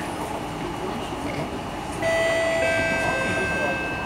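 Steady running rumble of an SMRT C151B metro train heard from inside the car. About two seconds in, a two-note electronic chime sounds, the second note starting about half a second after the first, and both ring on until near the end. It is the on-board public-address chime that comes before the 'track crossing ahead' announcement.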